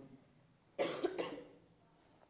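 A person coughing: a short burst of two or three coughs about a second in, lasting about half a second.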